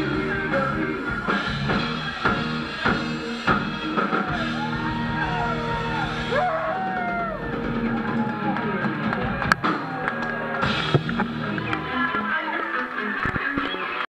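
Live rock band playing in a bar: a drum kit and electric guitars.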